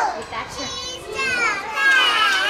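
A group of young children chanting a nursery action rhyme together in a sing-song unison, their high voices rising and falling.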